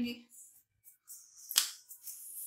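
Hands shaping a ball of papdi dough: soft rustling, then one sharp slap about one and a half seconds in.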